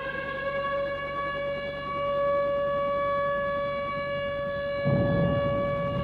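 A single steady held tone at one unwavering pitch, with a siren- or horn-like ring of overtones. About five seconds in, a low rumbling noise joins it.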